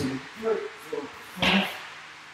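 A man's heavy, voiced breaths and grunts of exertion during a burpee: several short puffs, the loudest and breathiest about one and a half seconds in.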